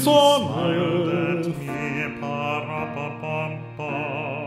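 Male voice singing long held notes with vibrato over piano accompaniment, in a classical style. The notes change about two seconds in and again near the end.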